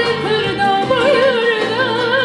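A female soloist sings a Turkish art song with a wide, wavering, ornamented melody line, accompanied by a traditional instrumental ensemble.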